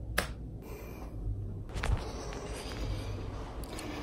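A few short, sharp clicks over a low steady hum: one right at the start, one about two seconds in and two close together near the end.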